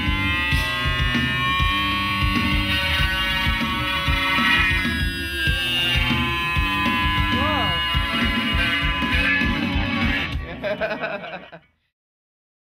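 Rock music with electric bass, guitar and a steady drum beat, fading out near the end.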